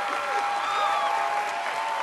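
Studio audience applauding, with a few voices calling out over the clapping.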